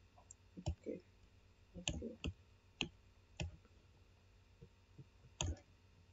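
Computer mouse buttons clicking several times at an irregular pace while blocks are connected in a Simulink diagram.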